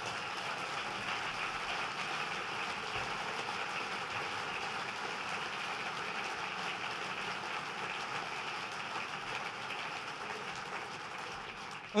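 A large seated audience applauding with steady, even clapping, easing slightly near the end.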